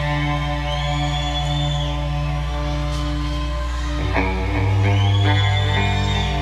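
Live rock band music: a held, ringing chord that changes to a new, slightly louder chord about four seconds in.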